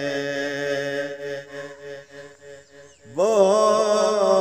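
A man singing a Punjabi Sufi kalam: a long held vowel fades away about halfway through, then a little after three seconds he comes in loudly on a new phrase, his voice sliding up into a held note.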